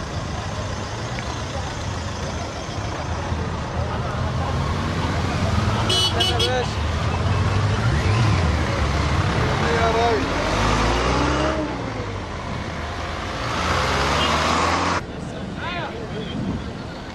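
A convoy of vehicles passing at close range: a pickup truck, motorcycles and SUVs. Their engines run with a steady low drone.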